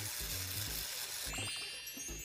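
Comic sound effect from an anime soundtrack: a steady hiss, then from about a second and a half in a high shimmering ring, over background music with a low pulsing beat.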